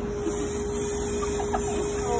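Aerosol hairspray can spraying in a steady high hiss, starting just after the beginning.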